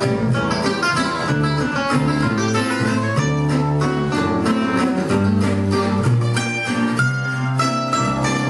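Gypsy-jazz trio playing an instrumental passage: a lead acoustic guitar picks a run of quick single notes over strummed rhythm guitar and plucked double bass.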